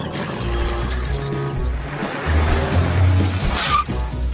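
Cartoon background music, with the sound of a small car driving along and a brief high squeal near the end.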